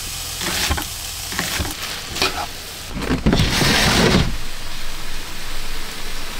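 Meat and vegetables sizzling in a frying pan while a wooden spatula stirs and scrapes them around the pan. The sizzling grows louder for about a second around the middle.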